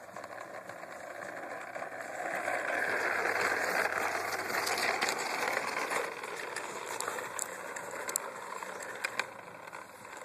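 Plastic toy push lawn mower rolling over sandy dirt, its wheels and mechanism rattling with scattered clicks, loudest in the middle.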